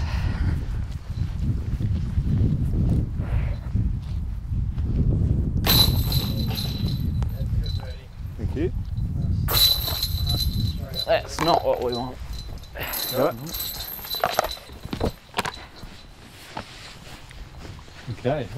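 Low, uneven rumbling of wind and movement on a body-worn microphone for roughly the first half. Then a few short snatches of indistinct voices.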